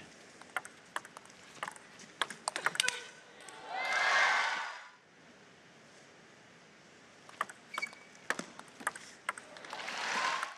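Table tennis rally: the celluloid-type ball clicks sharply off rackets and table in quick succession for about three seconds. About four seconds in comes a short burst of cheering with a shout as the point is won, then a few more scattered ball taps and bounces.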